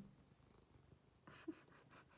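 Near silence: room tone, with one faint short sound about a second and a half in.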